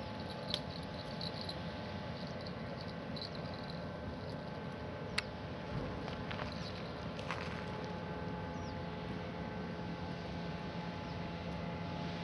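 Quiet riverside ambience: a steady faint hiss with a few soft clicks, the sharpest about five seconds in.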